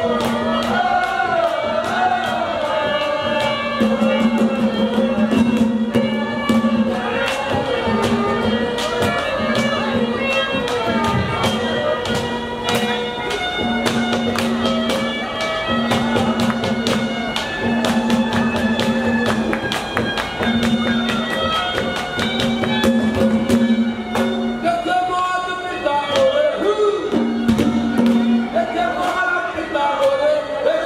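Live Haryanvi ragni folk music: a reed instrument holds long notes in repeated phrases over rapid drum and percussion beats, with a male singer's voice near the start and again in the last few seconds.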